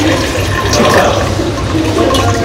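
Liquid reagent poured from a small glass beaker into a glass digestion tube, over a steady background rush and hum.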